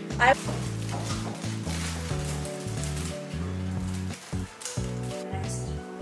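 Background music of sustained pitched notes over a bass line that changes every second or so, with a short voice right at the start.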